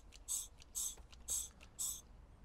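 Facom DA16 hand vacuum pump being worked, about two strokes a second, each stroke a short hiss of air. It is drawing vacuum on a newly fitted turbo wastegate solenoid to check that it holds vacuum.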